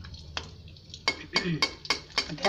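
A long-handled metal ladle stirs and knocks against a kadai of hot oil as rice vadam fries, giving about five sharp clicks, most of them in the second half, over a faint sizzle of frying oil.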